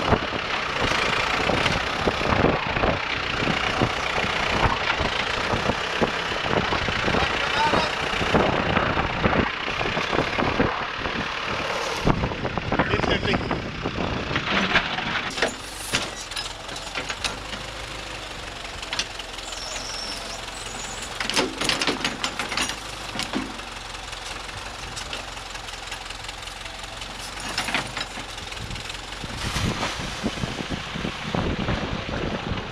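Ford 555D backhoe's diesel engine running under load through roughly the first half, then quieter, with a low steady hum and a few scattered knocks.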